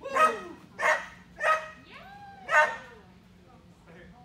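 Small dog barking four times in about two and a half seconds, short, loud barks.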